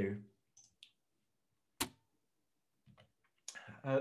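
A single short, sharp click a little before the middle, with a few faint ticks around it and near silence otherwise.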